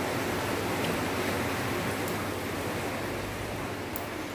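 Steady, even hiss of background noise, with a faint click near the end.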